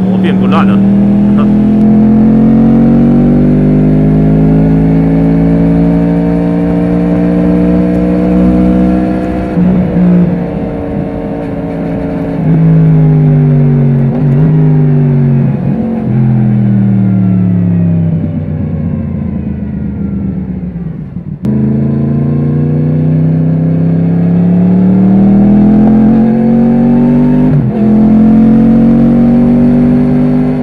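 Yamaha MT-10 motorcycle's crossplane inline-four engine under way. The revs climb steadily and break briefly for a gear change about ten seconds in. They fall away as the bike slows, drop sharply a little past two thirds of the way through, then climb again with another brief shift break near the end.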